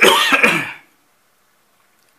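A man clears his throat in one harsh burst lasting under a second, right at the start.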